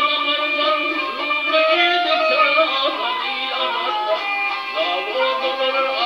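Turkmen gyjak (bowed spike fiddle) and dutar (two-stringed long-necked lute) playing a folk melody together, the bowed gyjak line over the plucked dutar.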